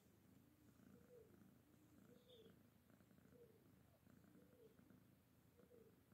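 Fluffy domestic cat purring softly and steadily, the purr swelling and fading with each breath about once a second.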